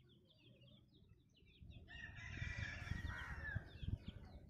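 A rooster crowing once, a long call of about two seconds starting about two seconds in, over steady high chirping of small birds. A low rumble on the microphone runs under the crow.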